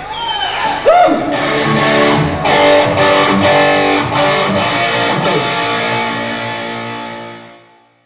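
Live hard rock band with distorted electric guitars: sliding, swooping notes in the first second or so, then held chords punctuated by sharp hits, fading out to silence near the end.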